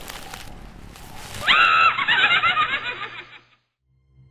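A loud, cry-like horror sound effect over a faint rustling haze: it holds one pitch for a moment about one and a half seconds in, then trembles and wavers for over a second before cutting off.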